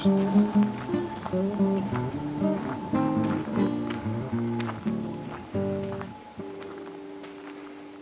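Instrumental background music: a run of short melodic notes, then one long held note that slowly fades out near the end.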